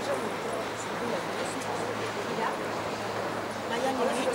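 Indistinct voices of people talking nearby over a steady low hum.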